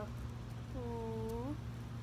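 A woman's single drawn-out hesitation sound, a held "uhh", lasting under a second and rising in pitch at its end, over a steady low background hum.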